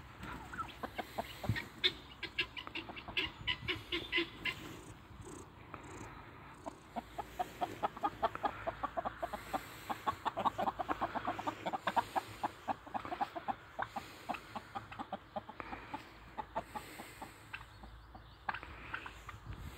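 A flock of hens clucking, with a dense run of rapid short clucks through the middle.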